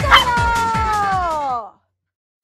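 Toy poodle giving one long whine that slides down in pitch, eager for a treat, over background music with a steady beat. Both stop abruptly about three-quarters of the way through.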